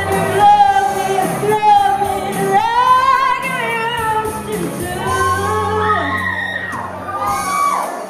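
Pop-rock song with a woman's voice singing long, held notes that glide up and down over the backing track.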